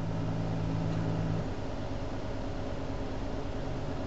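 Land Rover LR3 engine idling, heard from inside the cabin at the driver's footwell: a steady low hum and rumble, with a louder low drone that drops away about a second and a half in.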